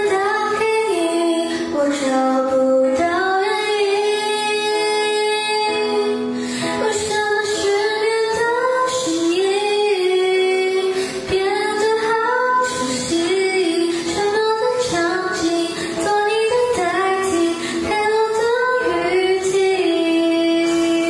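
A young woman singing a slow melody solo into a handheld microphone, holding long notes and gliding between pitches.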